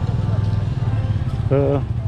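Street noise: a steady low rumble of traffic with a motorcycle going past, and one short spoken syllable about one and a half seconds in.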